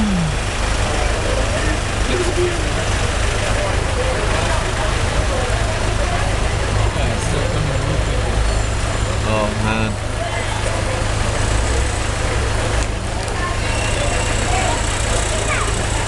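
Steady rumble of idling and slow-moving vehicle engines in congested street traffic, heard close up from inside a vehicle, with laughter at the start and a few brief voices.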